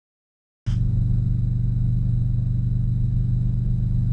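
Steady low drone of a piston-engine helicopter's engine and rotors running, heard inside the cockpit; it cuts in abruptly about half a second in, with a faint thin high whine above it.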